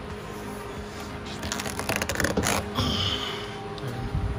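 Metal conduit being bent around a spare tire and handled against a ratchet strap. About a second in comes a run of clicks and scrapes lasting about a second and a half, then a short high squeak, over a steady low hum.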